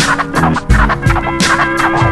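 Instrumental hip-hop beat with drum hits about every 0.7 seconds under a held low synth note, without rap vocals.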